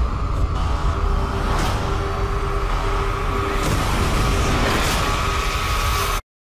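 Film trailer score and sound design: a loud, steady low rumble under held droning tones.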